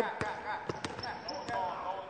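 Basketball being dribbled hard on a gym floor, a few irregularly spaced bounces, with a brief high squeak near the middle.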